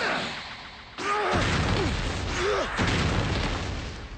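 Animated sound effects of a huge boulder being thrown: a rushing noise, then a sudden heavy impact about a second in, followed by a deep rumble lasting about two seconds.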